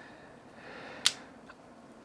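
A single sharp click about a second in: the blade of a Christensen Knives Maverick S liner-lock folding knife being opened.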